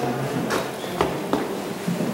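Three sharp clicks or knocks, roughly half a second apart, over a steady background of indoor room noise with brief fragments of voices.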